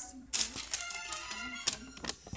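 A children's cartoon playing on a screen in the room: music with a held note and a voice, set off by a few sharp taps, sounding faint behind the room.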